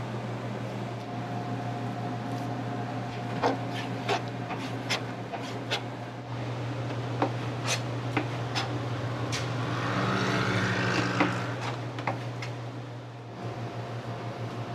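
Irregular sharp clicks of a chef's knife on a plastic cutting board as sliced beef is cut and handled, over a steady low hum of kitchen equipment. Around ten seconds in, a brief hissing rush swells and fades.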